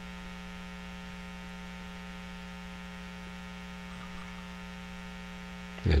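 Steady electrical mains hum: an unchanging buzz made of a stack of even tones, strongest low down, holding at one level throughout.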